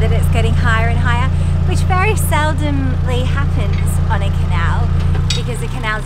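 A narrowboat's engine runs steadily with a low hum under a woman talking. About five seconds in, the hum changes and drops a little in level.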